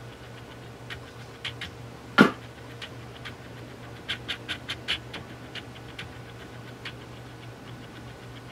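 Lens autofocus motor of a Canon EOS Rebel T4i hunting for focus in video mode, recorded through the camera's onboard mic as irregular clicks and ticks over a steady low hum, bunching into a quick run about four seconds in, with one louder knock about two seconds in. This is the autofocus noise that makes the onboard mic unusable with autofocus on.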